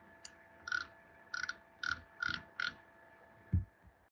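Five quick computer keyboard key clicks, about half a second apart, after one lighter click; the keys are used to paste a copied image. A single low thump follows near the end, over a faint steady hum from the recording setup.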